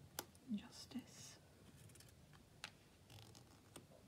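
Matte-stock tarot cards being flipped and laid down one on another on a velvet cloth: a few soft clicks and slides of card on card. A brief faint murmur is heard about half a second in.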